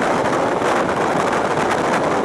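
Steady rush of wind and running noise from an EN57 electric multiple unit travelling at speed, heard at an open window, with wind buffeting the microphone.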